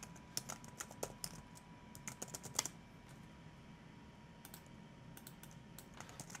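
Typing on a computer keyboard: a quick run of keystrokes over the first two and a half seconds, a pause, then a few more keystrokes near the end.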